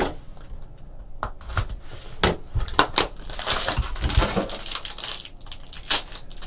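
Gold foil trading-card pack wrapper being crinkled and torn open by hand, with irregular clicks and taps of cards and plastic card cases handled on the table.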